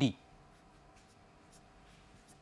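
Marker pen writing letters on a whiteboard: faint, short scratchy strokes.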